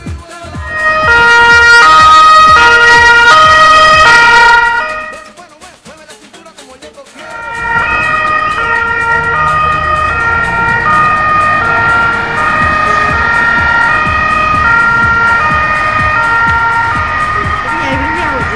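Police vehicle two-tone siren, alternating between a high and a low note, very loud and close for a few seconds. It cuts out about five seconds in and starts again a couple of seconds later, alternating more slowly.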